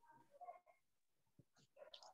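Near silence on an online call, with a faint, brief high-pitched sound about half a second in.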